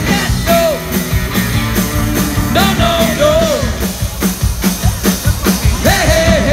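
A live band playing rock music through a large outdoor PA, with a singer and a steady drum beat.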